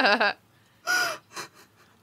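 People laughing, trailing off in the first moment, then a short high-pitched gasping laugh about a second in, followed by a quick breath.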